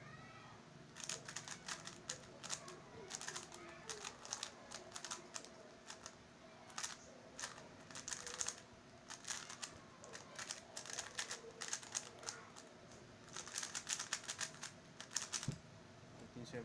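Stickerless MoFang JiaoShi MF3RS 3x3 speedcube turned fast in a solve: bursts of rapid plastic clicking and clacking as the layers turn, with short pauses between bursts.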